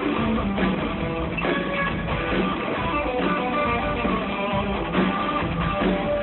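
A live band playing, with guitar to the fore.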